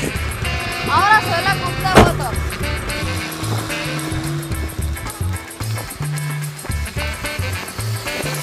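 Background music with a steady beat, with a short flurry of rising whistle-like tones about a second in and a single sharp hit about two seconds in.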